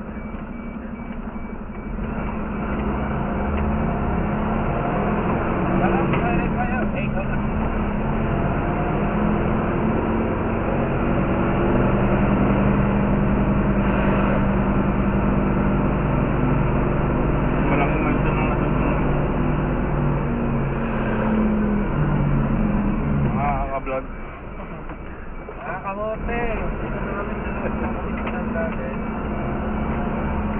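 Rosenbauer fire truck's engine running as the truck drives, steady under way. It grows louder about two seconds in and drops off noticeably near the end as the truck slows to a stop.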